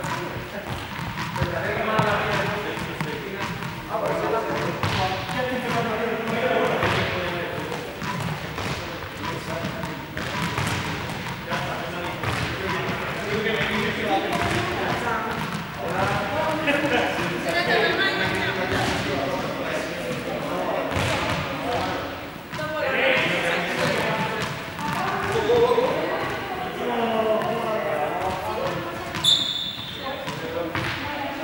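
Indistinct chatter of several people in a large, echoing sports hall, with frequent short thuds of objects hitting the hard floor.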